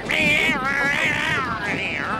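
Cartoon cat fight: cats yowling and screeching, the pitch wavering up and down, with a short break about one and a half seconds in.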